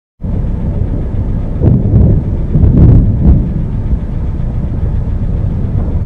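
Thunder rumbling, loud and low, swelling about two to three and a half seconds in, then cut off suddenly at the end.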